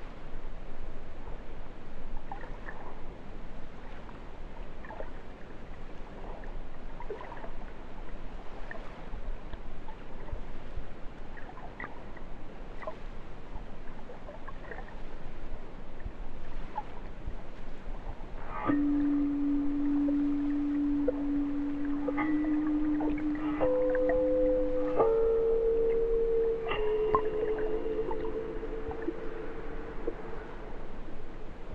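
Underwater river sound picked up by a hydrophone: a steady hiss scattered with faint clicks and ticks. About two-thirds of the way in, a sustained musical tone enters and further notes join it in steps, building into a layered drone.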